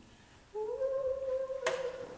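A person humming one long held note that slides up slightly at the start and then stays steady, with a sharp click near the end.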